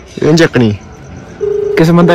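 Ringback tone from a smartphone's loudspeaker while an outgoing call rings and has not been answered. The low buzzing tone stops right at the start and comes back for a short burst about one and a half seconds in.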